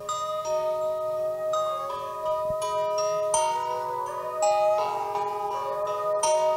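Soft background music: a slow melody of ringing, overlapping pitched notes, a new note entering about every half second to a second.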